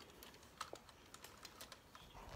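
Faint, irregular light clicks and ticks from a telescoping ring-light tripod pole being handled and its sections slid out to extend it.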